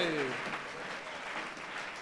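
A crowd applauding in a large hall, a steady patter of clapping, with the falling tail of a man's shout fading out at the very start.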